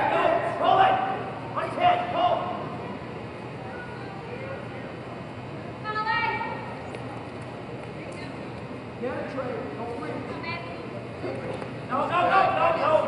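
Mostly speech: a few short spoken phrases with pauses between them, over the steady background sound of a large gym.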